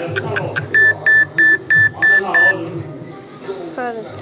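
GizmoWatch kids' smartwatch timer alarm going off: six short, high, evenly spaced beeps, about three a second, as a two-second countdown runs out. A few quick ticks come just before them.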